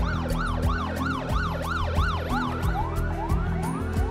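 Emergency vehicle siren on a fast yelp, about five rising-and-falling sweeps a second, changing to slower rising whoops near the end.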